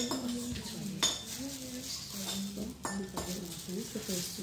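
A kitchen knife cutting tomatoes in a plastic bowl, tapping and scraping against the bowl, with a few sharp clicks at the start, about a second in and near three seconds.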